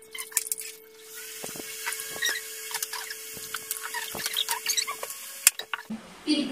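Sped-up time-lapse audio of drinks being prepared: rapid, high-pitched squeaky chatter and quick clicks and clinks of bottles and containers, over a steady hum that stops about five seconds in, with a sharp click near the end.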